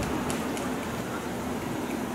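Street traffic noise fading as a passing car moves away, leaving low outdoor background noise with faint voices.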